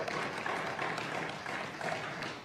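Applause from members in a parliamentary chamber: a dense, even patter of many hands that starts right as the speaker pauses.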